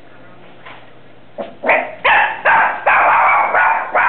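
Small affenpinscher dog barking: a quick run of loud, high barks begins about a second and a half in and keeps going. Alarm barking at someone arriving home.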